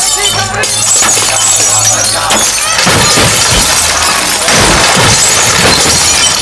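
Glass soft-drink bottles being smashed, many shattering one after another in a dense run of breaking glass, with music underneath.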